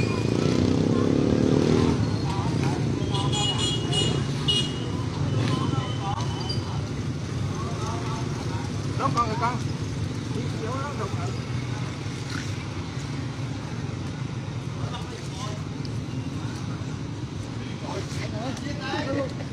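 Steady low rumble of road traffic, louder for the first two seconds, with scattered voices of people close by.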